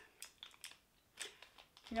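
Faint crinkling and a scatter of light clicks as small packaging is handled to take out brass horseshoe-shaped rings.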